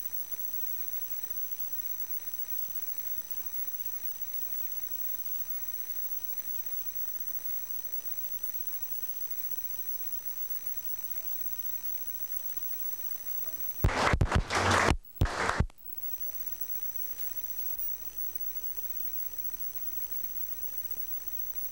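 Steady tape hiss with a faint high whine from a dead audio track, interrupted about three-quarters of the way through by a loud, crackling burst of about two seconds, broken by brief gaps, as the sound cuts in and out.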